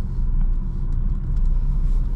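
Steady low rumble of engine and road noise inside a Honda car's cabin as it drives slowly.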